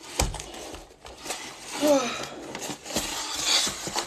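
Packaging being handled and set down: rustling with several knocks and a couple of thumps, and a short vocal sound about two seconds in.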